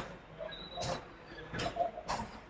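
A few irregular knocks and clatters, about four in two seconds, as of someone moving about a room and handling things.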